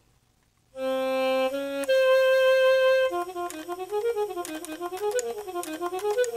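Yamaha YDS-150 digital saxophone playing its classical-sounding alto saxophone voice (preset A10). After a short silence it holds two long notes, the second an octave above the first, then plays a smooth legato phrase that winds up and down.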